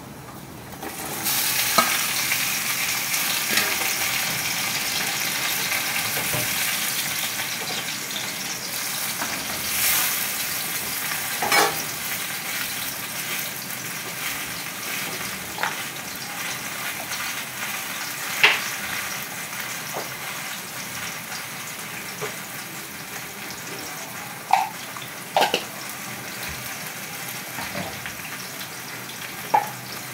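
Sliced sponge gourd (patola) tipped into hot oil in a wok, setting off a loud sizzle about a second in that slowly eases off as it fries. A few short sharp clicks sound over the sizzle.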